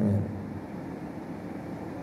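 A man's brief "hmm" at the start, then steady background noise with no clear source.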